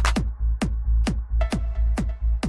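Electronic dance music: a steady four-on-the-floor kick drum, about two hits a second with a falling thud on each, over a continuous deep bass line. A faint higher synth tone comes in near the end.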